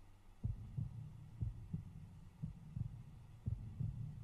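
Heartbeat sound effect: low, muffled double thumps, a pair about once a second, starting about half a second in over a faint low hum.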